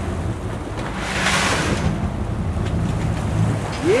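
Boat engine running low and steady under wind on the microphone, with waves washing against the hull; a louder rush of water swells about a second in and fades before the two-second mark.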